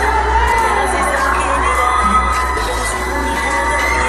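Live pop song over a PA system, a man singing into a handheld microphone over a steady bass backing track, with a crowd of fans screaming and cheering throughout.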